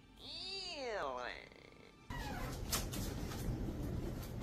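A single drawn-out pitched call, about a second long, that rises then falls in pitch, like a meow. From about two seconds in comes steady room hum with scattered light clicks.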